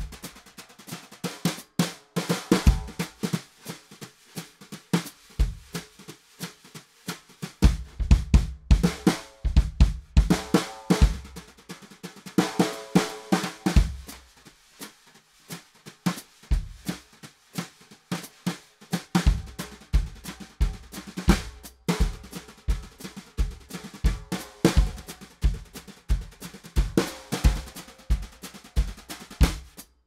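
Ludwig Acro metal-shell snare drums played with wire brushes in a rhythmic groove, with bass drum kicks underneath that fall into a steady pulse in the second half.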